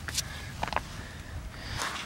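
A few faint, brief scuffs of a concussed black-tailed jackrabbit scrabbling on dry dirt and toppling onto its side, over a low steady rumble.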